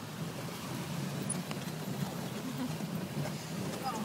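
Four-wheel-drive jeep's engine running steadily under load, heard from inside the cabin, over a steady rush of river water as the vehicle fords a glacial river.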